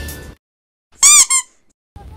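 Two short, high squeaks about a second in, the first longer, each rising and then falling in pitch, just after background music fades out.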